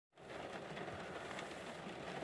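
Faint, steady background noise inside a car's cabin: an even low rumble and hiss with no distinct events.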